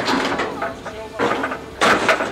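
A phone's swollen lithium battery venting and burning as it is crushed under a scrap grab, hissing, with a strong burst of hiss near the end. A machine runs low underneath.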